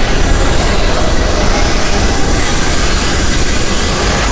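Loud, steady rushing and rumbling sound effect as a magic wish takes effect, undoing the ice and snow.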